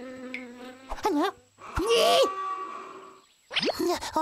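Cartoon sound effect of a fly buzzing, its pitch wavering up and down, with a louder, noisier burst about two seconds in.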